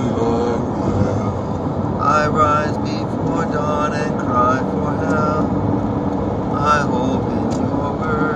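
Voices chanting psalms on a near-monotone recitation tone, in short phrases, over a steady low rumble of road noise inside a moving car.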